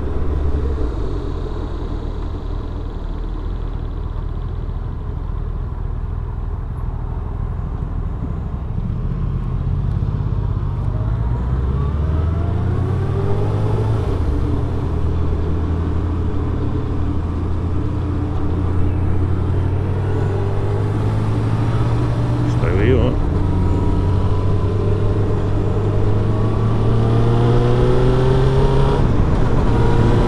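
1999 Suzuki Hayabusa's inline-four engine heard from the rider's seat with wind rush: running low and steady at first, then its note rising as the bike accelerates, easing, and rising again and louder near the end.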